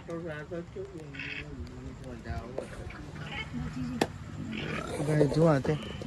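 People's voices talking and murmuring, louder and more animated near the end, with one sharp click about four seconds in.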